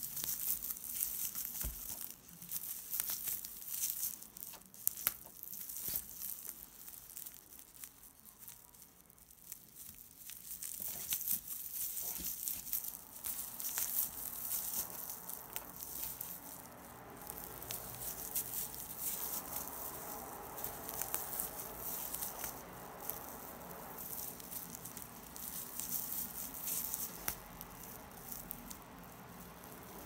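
Shiny flat tape yarn crinkling and rustling as it is pulled through stitches with a crochet hook during single crochet: quiet, irregular little crackles and rustles.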